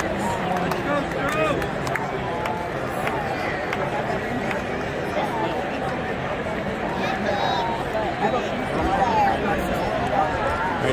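Crowd chatter in the stands of a baseball stadium: many spectators talking at once in a steady babble, with no one voice standing out.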